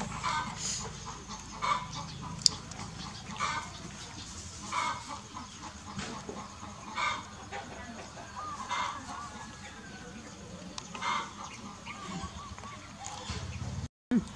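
Chickens clucking, one short call roughly every second.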